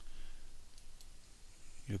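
A few faint computer mouse clicks in a quiet room.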